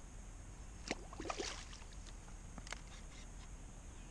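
A hooked bass splashing at the surface beside a kayak, a few short sharp splashes and knocks about a second in, around a second and a half, and near three seconds.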